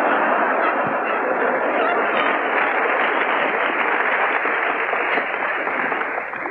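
Large lecture-hall audience laughing and applauding after a joke, a dense, steady wash of sound that begins to die down near the end.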